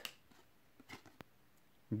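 Faint handling of cardboard trading cards: a few soft clicks and flicks as cards are slid from one hand to the other, the sharpest about a second in.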